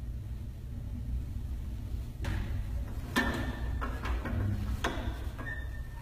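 Toilet paper roll being handled in its holder: a series of knocks, clicks and paper rustles starting about two seconds in, over a steady low rumble.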